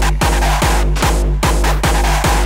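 Hardstyle/jumpstyle dance music: a fast, even run of distorted kick drums, about four a second, each dropping in pitch, over a steady bass and synth line.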